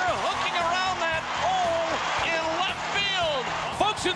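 Music with a voice over it, at a steady level.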